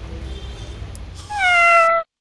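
A single loud cat meow about a second and a half in, sliding down a little in pitch and then holding before it cuts off abruptly. Before it there is a steady low room hum.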